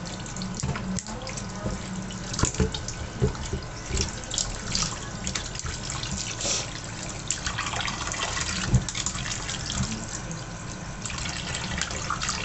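Tap water running into a metal pot in a stainless-steel sink while hands rub and rinse raw chops, with irregular splashes and sloshes of water.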